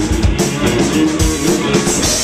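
Punk band playing live: a drum kit and electric guitars and bass going at full volume, in an instrumental stretch without vocals.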